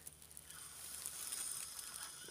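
Faint, soft rustling of a disposable plastic apron and gloves as the wearer moves, growing slightly louder towards the end.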